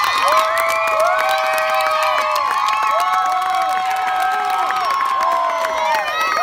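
Crowd of spectators cheering and shouting on relay runners, many high-pitched voices calling out at once without a break.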